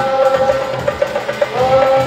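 Marawis ensemble of girls playing: small marawis hand drums beating a steady rhythm under a long held sung note from the lead singers, with a new sung note starting about a second and a half in.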